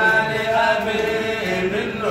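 Man chanting a Sufi devotional zikr (Hamallist kassida), his voice holding long, sustained notes that bend slowly in pitch.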